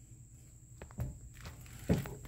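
Footsteps on vinyl plank flooring in a small motorhome interior: a few soft thuds, the loudest just before the end.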